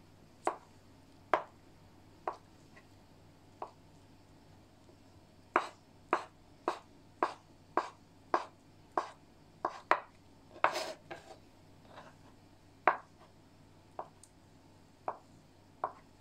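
Kitchen knife dicing peeled eggs on a wooden cutting board: sharp knocks of the blade against the board. The knocks are slow and spaced at first, come in a quick run of about two a second in the middle, then slow again.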